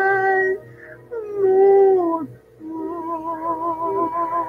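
Karaoke singing over a minus-one backing track: a voice holds a long note, breaks off briefly, then holds a second long note that slides down at its end, with no clear words. Near the end a wavering, vibrato-like tone carries on with the backing music.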